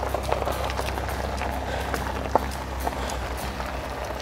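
Road bike tyres rolling over a dirt and gravel road: an even crunching hiss with a few small clicks of stones, over a steady low rumble.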